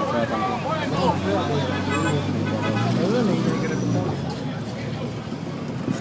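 Men's voices talking inside a car cabin over the steady drone of the vehicle's engine and road noise. The low engine drone swells about a second in and eases off about four seconds in.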